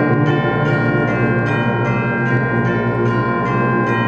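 High school concert band playing sustained Christmas music, with tubular bells (chimes) struck in a steady repeated pattern about two times a second, ringing over the band.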